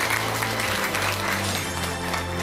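A studio audience applauding, many hands clapping steadily, with music playing under it that holds low notes.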